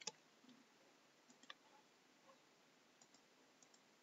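A few faint, scattered clicks from a computer keyboard and mouse over near-silent room tone, the loudest right at the start.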